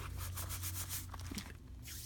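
Hands rubbing and smoothing paper flat on a journal page: a soft, steady brushing of skin on paper.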